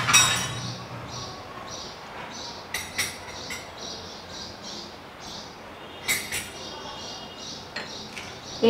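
Kitchen utensils clinking against bowls and a pan, with one sharp ringing clink at the start and a few lighter clinks about three and six seconds in. A faint high chirp repeats two to three times a second behind them.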